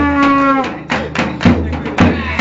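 Live Balkan-style trumpet music: the trumpet holds one long note for about half a second, bending down at its end, then drum strokes follow at about three a second, with an acoustic guitar and clapping.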